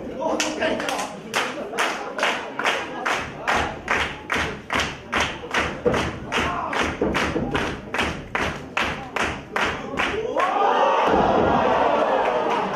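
A long run of sharp, evenly spaced impacts, about three a second, heard in a wrestling hall. Near the end they stop and crowd shouting rises as a pin begins.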